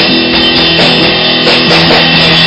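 Punk band playing loud and live in a small room: drums on a Pearl kit under electric guitars.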